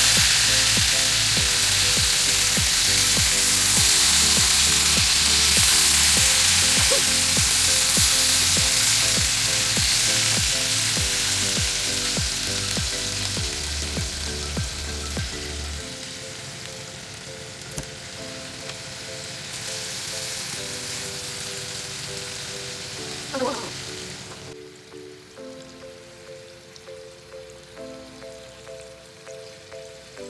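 Marinated pork belly frying in oil in a pan: a steady sizzle that fades through the second half and drops sharply about 24 seconds in. Background music plays throughout.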